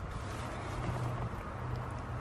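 Steady outdoor background noise with a faint low hum underneath, with no distinct events.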